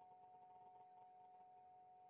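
Near silence: faint room tone with a thin, steady, faint hum.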